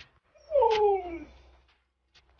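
A pet animal's single drawn-out call, falling steadily in pitch over about a second.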